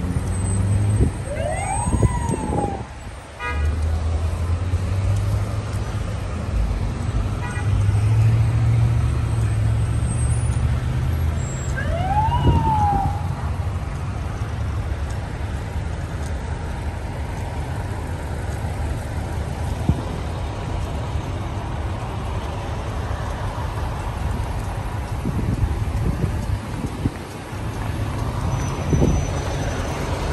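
Steady low rumble of idling vehicle engines in stopped traffic. Two short siren whoops rise and fall, one near the start and another about twelve seconds in.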